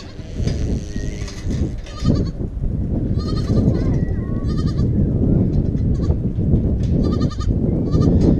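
A goat bleating several times in short, quavering calls, over a heavy low rumbling noise on the microphone.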